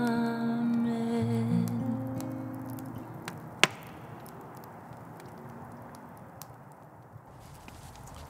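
Acoustic guitar and a hummed voice holding the last notes of a hymn, fading away over the first two to three seconds. A single sharp click comes about three and a half seconds in, then a low steady hiss with a few faint scattered clicks.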